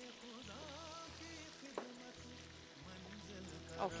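Seekh kebabs deep-frying in hot oil, a soft steady sizzle, under quiet background music with a wavering melody. There is a single short click a little under two seconds in.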